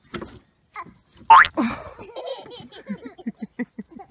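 A small child's sharp rising squeal about a second in, followed by laughter that ends in a quick run of short 'ha-ha' laughs.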